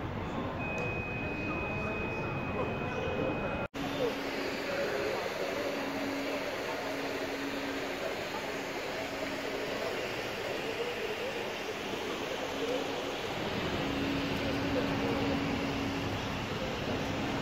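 Airport terminal ambience: indistinct voices over a steady background hum. A thin steady high tone sounds for about three seconds at the start, and the sound cuts out briefly about four seconds in.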